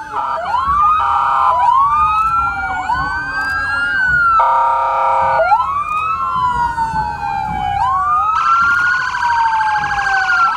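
Several police vehicle sirens sounding at once, their wails rising and falling and overlapping. A steady blaring tone cuts in for about a second midway, and a fast warble takes over for the last second and a half.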